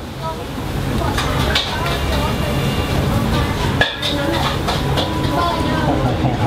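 Busy restaurant ambience: background voices over a steady low rumble, with one sharp click about four seconds in.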